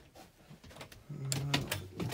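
A few sharp clicks of an RV interior door's latch and handle as the door is worked open, in a small room, about a second and a half in.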